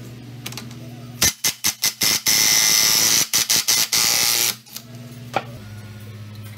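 Compressed-air blow gun blowing dust out of a scooter's CVT transmission case: several short hissing puffs starting about a second in, then one blast of about two seconds, then a few more short puffs.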